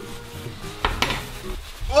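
A metal spoon clinking and scraping in a tin can of sweetened condensed milk, with one sharper clink about a second in.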